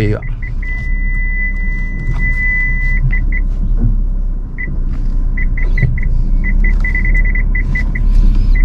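A car's reverse parking sensor beeping inside the cabin of a Suzuki car in reverse: a few short beeps, then a held tone for about two seconds, then beeps at changing speeds that come faster and almost merge near the end. The held tone and fast beeps are the signs of an obstacle close behind. A low engine rumble runs underneath.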